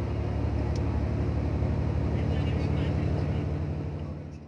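Steady low drone of a vehicle engine and road noise heard from inside a moving coach.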